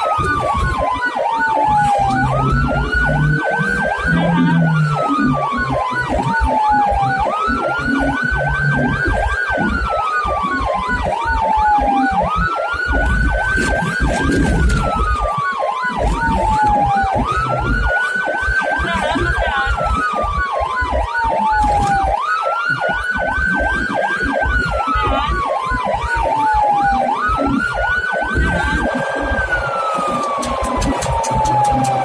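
Ambulance siren wailing in a repeating cycle about every five seconds: each cycle rises quickly, holds briefly, then falls slowly, with a fast pulsing tone layered over it. The vehicle's engine and road noise rumble underneath.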